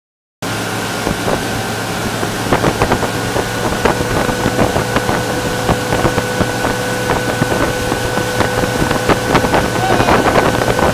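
Motorboat engine running steadily at towing speed, over the rush of water churning in its wake and wind buffeting the microphone. The sound cuts out for a moment right at the start.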